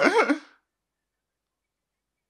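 The tail of a man's laugh: one last voiced, wavering exhale that lasts about half a second.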